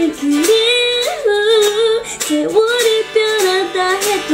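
A woman singing a Korean ballad, holding long notes that bend in pitch, while accompanying herself on a strummed guitar.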